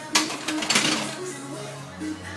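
Background music with held notes, cut by two short hissing bursts: one just after the start and one just under a second in.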